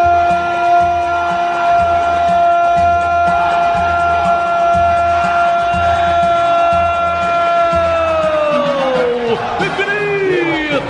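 A radio football commentator's long goal shout, one high note held steady for about eight seconds, then falling away near the end, over a steady low beat.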